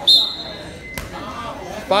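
Referee's whistle, one short, shrill blast signalling the start of wrestling from the referee's position. About a second later comes a single sharp thud, and a shout near the end.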